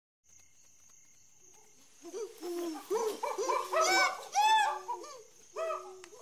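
Chimpanzee pant-hoot: a run of hoots starting about two seconds in, climbing in pitch and loudness to loud climax calls past the middle, then dropping back to lower hoots near the end.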